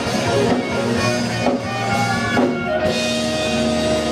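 Live rock band playing: electric guitars, bass guitar and drum kit, loud and full throughout. A long held note comes in about three seconds in.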